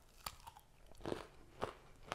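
A person biting and chewing a frozen vanilla ice cream bar loaded with crushed Crunch bar: three faint crunches spread over two seconds.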